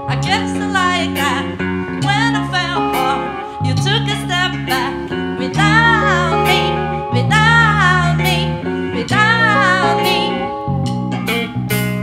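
Live rock band playing: a woman sings with a wavering vibrato over two electric guitars and a drum kit keeping a steady beat.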